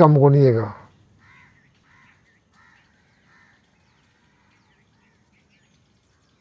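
A man's voice ends within the first second, then faint bird calls: a few short calls between about one and three and a half seconds in, followed by thin high chirps.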